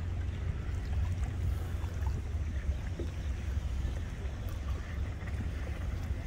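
Wind buffeting the microphone outdoors, a steady, unsteadily flickering low rumble.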